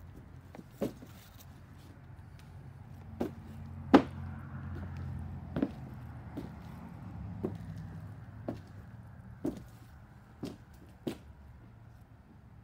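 Irregular knocks and taps, the loudest a single sharp knock about four seconds in, over a low hum that swells in the middle and then fades.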